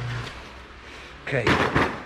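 A man's voice saying "okay" about halfway through; before it, a steady low hum cuts off just after the start.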